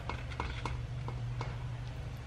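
Silicone pastry brush dabbing glaze onto baked rolls in an aluminium baking pan and dipping into a cup, heard as a few faint light taps and clicks over a steady low hum.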